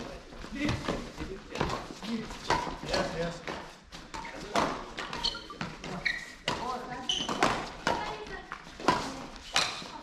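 Badminton rally: repeated sharp racket hits on the shuttlecock and thuds of players' feet on the court, echoing in a large hall.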